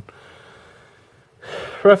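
A pause in a man's speech, with only faint hiss, then a short audible intake of breath about one and a half seconds in, just before he speaks again.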